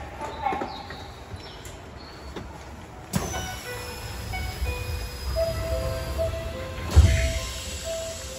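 Keisei commuter train's doors closing, heard from inside the car: a chime of short steady tones plays, and the sliding doors shut with a heavy thud about seven seconds in.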